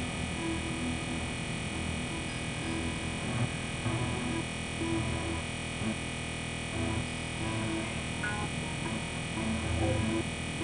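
Experimental synthesizer drone music: a dense bed of many held tones, with irregular low swells and short mid-pitched notes sounding over it.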